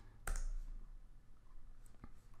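A single computer mouse click about a third of a second in, over a faint low hum.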